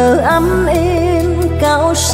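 Vietnamese tân cổ (modern vọng cổ) music: a woman's voice holds long, wavering notes over a band with a steady bass line.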